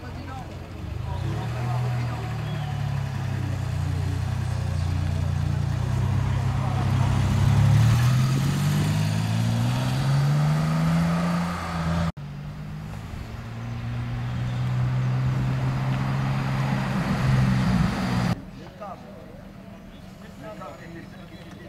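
Renault Alpine sports car engine running as the car pulls away and accelerates, its pitch rising with the revs. The sound breaks off suddenly about twelve seconds in, picks up again, and cuts off near the end.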